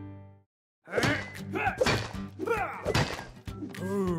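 Cartoon soundtrack: a held musical chord fades out, there is a brief silence, and then lively music starts with repeated knocks and quick pitch-sliding sound effects.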